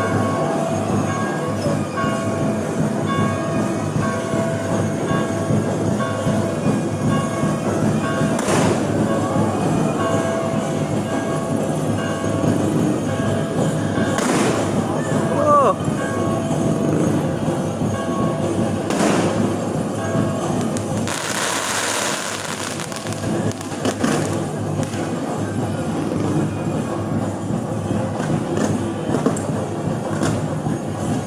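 Fireworks bursting overhead, a sharp bang every few seconds, with a longer hissing crackle about two-thirds of the way through. Under them runs a steady din of crowd voices and music.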